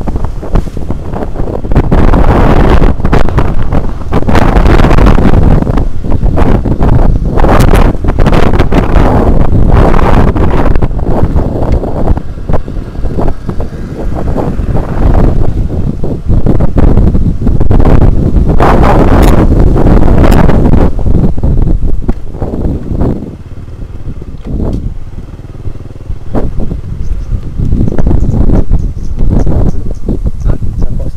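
Motorcycle riding over a rough dirt track, its engine running under heavy rumble and buffeting on the microphone, with frequent knocks and jolts from the bumps. It eases off and goes quieter for a few seconds about three quarters of the way through, then picks up again.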